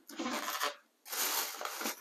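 Paper and packaging rustling in two short bursts as a hand rummages through a gift box whose presents are layered in tissue paper.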